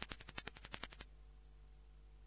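A quick run of about a dozen faint clicks in the first second, fading away, followed by a faint low hum.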